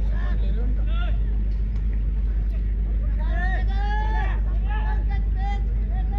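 Voices shouting loudly at a track race, with a few calls near the start and a run of long, high-pitched shouts from about halfway through, over a steady low rumble.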